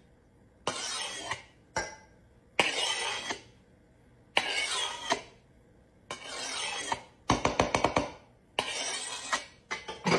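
Spatula scraping spilled ketchup across a kitchen countertop in repeated short strokes, with a quick run of rapid taps about seven seconds in.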